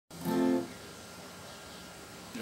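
A single short acoustic guitar chord near the start, stopped after about half a second, then quiet room tone.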